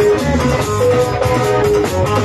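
Live band music: an electric guitar picks a melodic line of short held notes over a moving low bass line and a steady drum beat.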